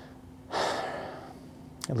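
A man's long audible breath through the mouth in a pause in his speech, starting about half a second in and fading away over about a second.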